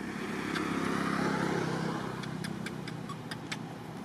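A motor vehicle passing by, its engine swelling to a peak about a second in and fading away by the middle.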